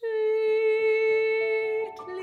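Mezzo-soprano voice holding one long, loud note, then moving to a lower note near the end.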